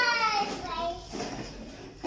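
A young child's high-pitched voice in one long drawn-out call that trails off within the first second, followed by a shorter vocal sound, then quieter room sound.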